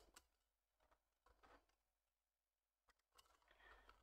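Near silence, with a few faint light clicks and taps of a small plastic trim piece being handled and fitted against the model's body, the clearest just after the start and another about three seconds in.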